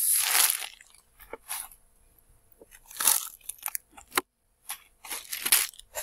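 Plastic packets and crumpled packing paper crinkling and rustling in short bursts as hands rummage in a cardboard shipping box. A sharp click comes a little after four seconds.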